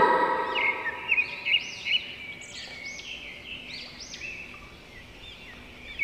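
Birds chirping: a run of short, high, rising-and-falling chirps that grow fainter toward the end.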